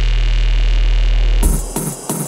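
Jump-up drum and bass track: a loud, held sub-bass note under a wash of noise. About one and a half seconds in the bass cuts out and a beat of sharp drum hits, about four a second, comes in.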